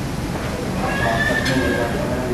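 Crowded restaurant dining-room ambience: a steady hubbub of background chatter, with a high-pitched voice rising over it about a second in.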